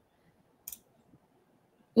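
Near silence broken once, about two-thirds of a second in, by a single short, sharp click.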